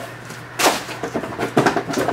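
Handling noise as a cardboard box is fetched and picked up: a rustling scrape about half a second in, then a few light knocks.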